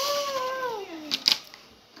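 A child's voice in one long, drawn-out call that falls steadily in pitch, with two quick clicks just past the middle.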